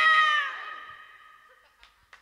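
Final sustained chord from an electronic arranger keyboard ending the song, its pitch sliding down about half a second in and then fading away.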